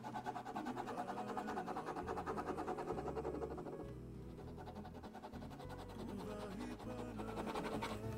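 Pen scratching quick back-and-forth hatching strokes on paper, several strokes a second, easing off about halfway through.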